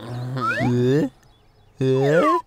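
A cartoon character's drawn-out vocal sound, held at a steady pitch for about a second; after a short pause another voice starts near the end.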